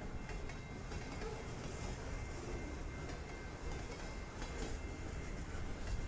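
Freight train of lumber-loaded centerbeam flatcars rolling past, a steady rumble of wheels on rail that grows a little louder near the end.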